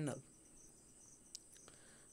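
Quiet background with a steady high-pitched tone running through it, and two faint clicks past the middle. The tail of a man's word trails off at the very start.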